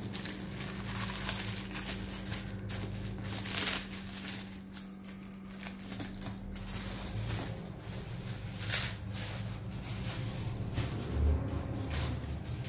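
Black gift wrapping crinkling and rustling in irregular handfuls as it is handled and pulled open.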